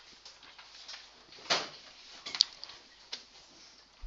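Quiet room with a few faint handling noises: a short scrape about a second and a half in, a sharp click a little later, and another click near the end.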